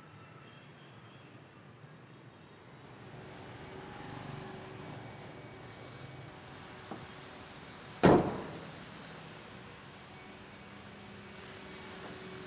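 A pickup truck's hood slammed shut: one loud bang about eight seconds in with a brief ringing decay, after a light click, over a steady low workshop background.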